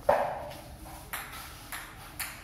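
A sharp knock right at the start that rings briefly, followed by two lighter clicks, about a second in and near the end.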